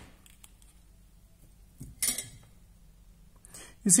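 A few light clicks and taps of a small component and tools being handled on a copper-clad circuit board, the sharpest about two seconds in.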